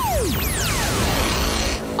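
Electronic sci-fi energy-burst sound effect with music: many falling whistle-like glides over a low rumble that cut off suddenly shortly before the end.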